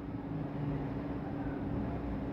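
Steady low background hum with a faint constant tone running under it, in a pause between spoken words.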